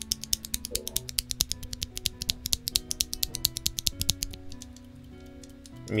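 A loose KTT Matcha tactile mechanical keyboard switch pressed over and over by hand: a fast run of sharp clicks, about ten a second, that stops about four and a half seconds in. Background music plays underneath.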